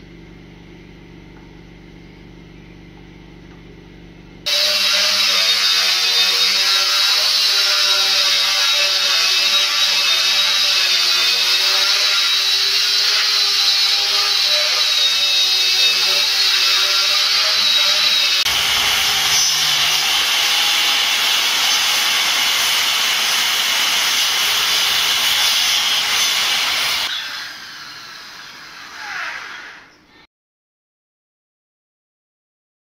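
Electric hand power tool cutting teak boards: a loud, steady run with a high whine that starts suddenly a few seconds in, changes character about two thirds of the way through, and dies away near the end. Before it starts, a quieter steady hum.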